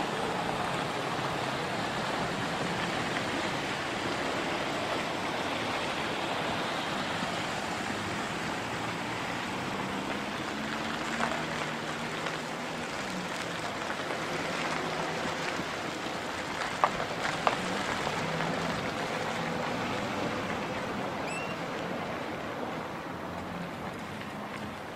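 A hearse and police cars driving slowly past: a steady wash of engine and tyre noise, with faint low engine hum in the middle and a couple of small clicks.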